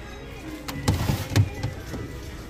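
A hand rummaging through stuffed toys and dolls in a plastic storage tote: rustling and a few short knocks, the loudest about a second in.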